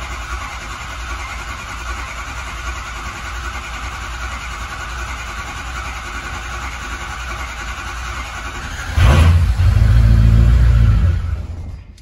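A 6.0 Powerstroke V8 diesel cranking steadily on the starter for about nine seconds, then catching with a loud low rumble that runs briefly and stops near the end. The long crank is from air in the freshly resealed high-pressure oil system, which slows the build of injection control pressure needed to fire.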